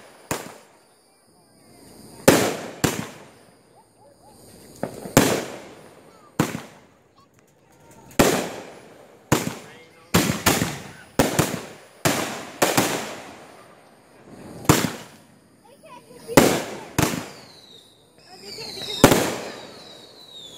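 Aerial fireworks bursting overhead: a string of loud bangs at irregular intervals, some in quick pairs, each trailing off in echo. A few high falling tones come near the end.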